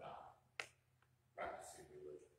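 Faint speech from a voice away from the microphone, with one sharp click, like a finger snap, about half a second in.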